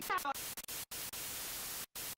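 Television-style static hiss from a logo sting, broken by several sudden brief dropouts, with a short warbling voice-like chirp at the very start.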